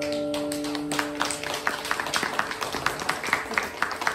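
The last strummed chord of an acoustic guitar rings out and fades over about the first second, then scattered hand claps from a few people follow.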